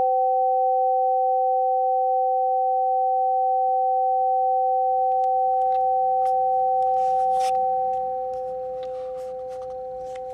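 Two tuned metal tubes of a Pythagorean tone generator, struck together a moment earlier, ringing on as a perfect fifth: two pure, steady tones that fade somewhat about eight seconds in. Light clicks and rustling come in over the second half.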